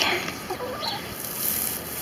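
A few brief, soft chicken clucks over a low rustle of straw as a hand pushes into a straw-covered compost pile.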